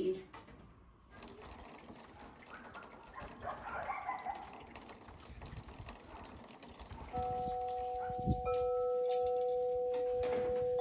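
Wind chimes ringing, starting about seven seconds in: a few clear, long-held tones that overlap, with higher notes struck in a second or two later. Before that there is only faint background.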